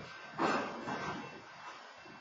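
Freight train cars rolling slowly past a level crossing, with a short rushing burst of noise about half a second in that fades over the next half second.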